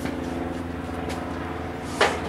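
A steady low mechanical hum from a running motor, with a light click about a second in.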